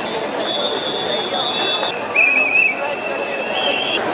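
Whistles blown in a crowd: one long, steady high whistle, then a lower held whistle that warbles briefly about two seconds in, over continuous crowd chatter.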